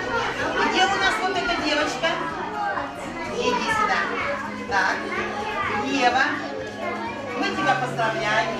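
Many children's voices chattering and calling out over each other, with background music playing.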